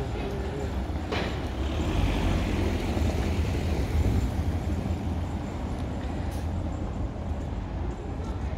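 Outdoor street noise heard while walking along a town street: a steady low rumble, with a sharp click about a second in.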